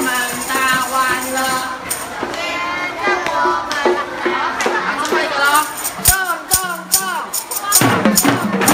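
Music with singing, and tambourines jingling and being struck, with a run of sharp tambourine hits about six to seven seconds in.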